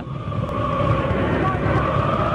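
Football crowd in the stands chanting together, a sustained sung chant over the general roar of the stadium.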